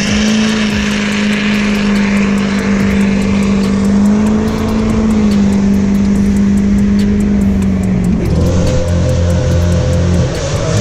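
A car engine held at steady high revs during a burnout, its spinning tyres adding a hiss of noise; about eight seconds in the engine note suddenly drops to a lower pitch.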